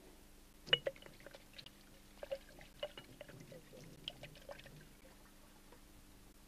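Light metal clinks and taps of a wire hook against a steel pot as a dripping cloth bag is hung over it: two sharper clinks about a second in, then a scatter of softer taps over the next few seconds.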